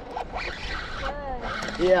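Spinning reel being cranked against a hooked fish, a quick rasping whir in two short spells.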